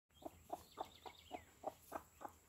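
A mother hen clucking softly and steadily, about four short low clucks a second: the brooding call a hen gives to her newly hatched chicks.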